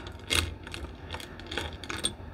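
Beaded bracelets clicking and clacking as they are handled and set down: a loose series of light clicks, about half a dozen, the loudest about a third of a second in.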